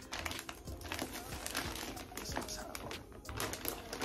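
Packaging being handled and crinkled as an item is unwrapped: an irregular run of small crackles and rustles.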